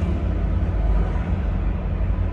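Steady low rumble of a car's engine and road noise, heard inside the cabin while driving.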